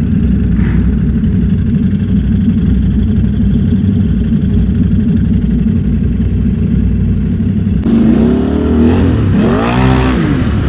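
ATV engines idling with a steady low rumble, then from about eight seconds in an ATV revving up and down as it drives through pond water, with the rush of splashing water.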